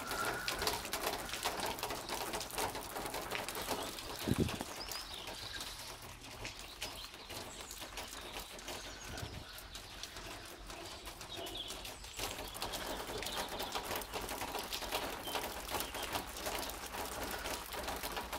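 Rain falling steadily, a dense patter of drops, with water spilling over a roof gutter. A single thump about four seconds in.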